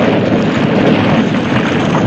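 Film soundtrack of a canyon collapsing in a rockslide: a loud, steady rumble of falling rock.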